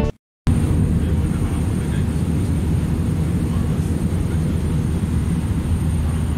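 Airliner cabin noise in flight: a steady low rumble of the engines and airflow heard from inside the cabin, with a faint thin high tone above it. It starts about half a second in, after a brief silence.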